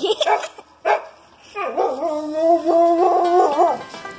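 A person laughing briefly, then an animal's long wavering whining call lasting about two seconds.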